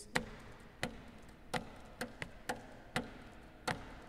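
About eight sharp hand taps on the wooden body of a classical guitar, in an uneven, syncopated rhythm, beating out a hemiola pattern.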